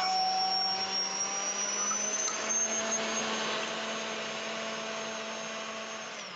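Sun Joe 9-amp electric garden tiller running under load, its motor whining steadily as the steel tines churn through loose soil, growing a little quieter near the end.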